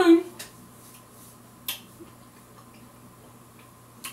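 Faint clicks while eating, one sharper click about one and a half seconds in, over a low steady hum.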